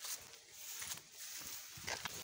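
Footsteps through tall grass and weeds, with irregular rustling of the vegetation.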